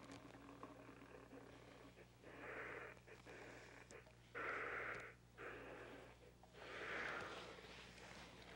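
Electric steam iron pressing a hem over a strip of heavy paper: three soft noises about a second each, a couple of seconds apart, over a steady low mains hum.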